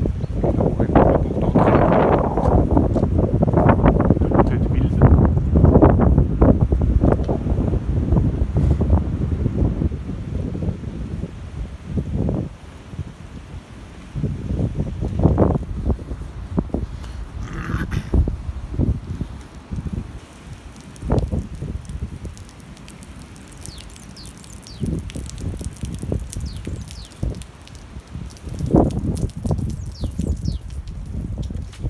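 Wind buffeting a handheld phone's microphone outdoors, an uneven low rumble that is heaviest in the first twelve seconds and then comes in weaker gusts.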